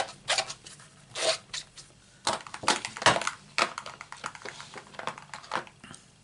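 Cloth rubbed over an inked rubber stamp to clean it: a run of irregular scrubbing and rustling strokes, with a couple of sharper knocks about two and three seconds in.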